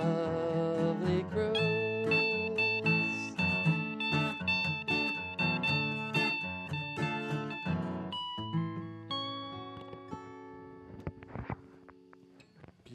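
Acoustic guitars playing the closing instrumental bars of a song, picked notes over chords, after the last sung word trails off at the start. The final chord rings out and dies away over the last few seconds.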